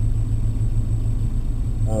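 Ford ZX2's four-cylinder engine idling steadily, heard from inside the cabin as a low rumble while the car waits to start its run.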